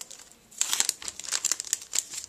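Clear plastic packaging crinkling as it is handled. The crinkling starts about half a second in as a dense run of short, sharp crackles.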